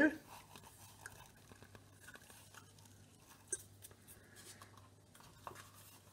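Faint rustling and small clicks of PVC electrical tape being pulled off the roll and wrapped by hand around a plastic coil spool, with a sharper click about three and a half seconds in.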